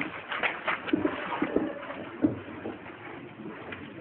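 Paper rustling and crackling as several exam candidates open envelopes and pull out and handle their exam papers, with a few short low sounds mixed in.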